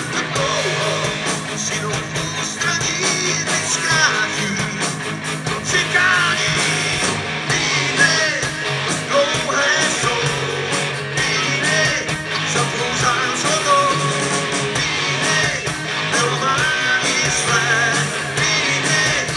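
Live rock band playing: electric guitars, bass guitar and drums at full volume, with a sung vocal line.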